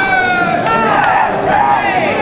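Several baseball players shouting long, drawn-out calls across the field, their voices overlapping.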